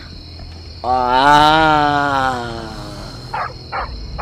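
A person's voice holding one long drawn-out note, starting about a second in and lasting about two and a half seconds, rising slightly and then slowly falling in pitch. Crickets trill steadily in the background.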